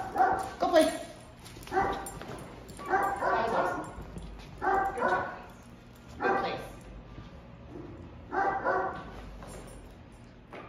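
A dog whining and yipping in short, pitched bursts, about six of them spread a second or two apart.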